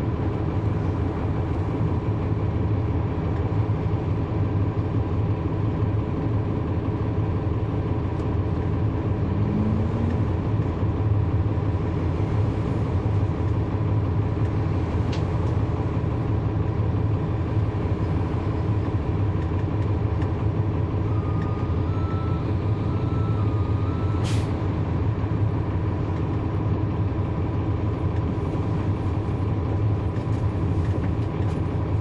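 Cummins ISL9 diesel engine of a 2010 NABI 40-foot transit bus running steadily, heard from inside the rear of the cabin. Partway through comes a short stepped beeping tone, then a brief sharp hiss.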